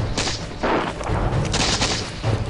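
Musket fire in a skirmish: a ragged run of several shots, each a sudden crack with a low boom, spaced about half a second to a second apart.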